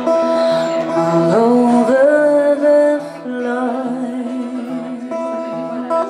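A live acoustic guitar plays sustained chords. A woman's voice comes in about a second in with a held, rising, gliding vocal line that fades out by the middle, leaving the guitar alone.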